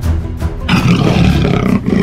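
A dinosaur roar over steady background music. The roar starts about two-thirds of a second in and lasts about a second.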